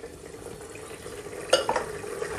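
A ladle stirring mutton gravy in an aluminium pressure cooker, soft scraping and sloshing over a steady low hum, with one sharp knock about one and a half seconds in.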